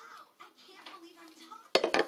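A brief clatter of several sharp knocks near the end, like hard objects striking each other or a tabletop, over faint voices in the background.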